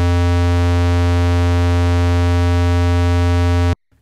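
Roland SH-101 analog synthesizer holding one low square-wave note. About half a second in, the pulse width is nudged off 50%, filling in extra in-between overtones. Near the halfway mark it is set back to a clean square, and the note cuts off abruptly just before the end.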